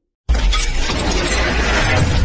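Shattering-glass sound effect with a heavy bass rumble in a logo intro animation. It starts suddenly after a brief silence about a quarter second in, then runs on loudly.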